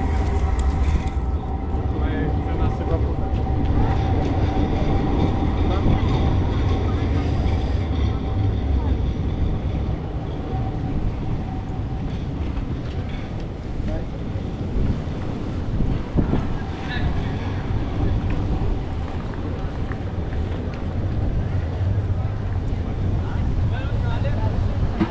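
Busy city-square street ambience: passers-by talking, footsteps on the paving, and a low rumble of traffic and trams. A steady hum runs through the first half.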